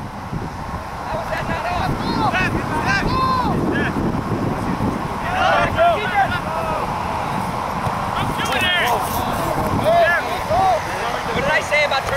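Players shouting short calls to each other across a grass soccer field, many brief shouts one after another, over wind rumbling on the microphone.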